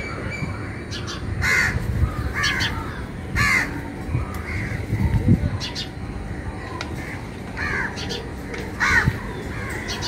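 Crows cawing: a series of short, harsh caws, bunched in the first few seconds and again near the end, over a steady low background rumble.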